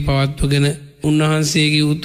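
A Buddhist monk's voice delivering a Sinhala sermon in a level, chant-like intonation, breaking off briefly about a second in.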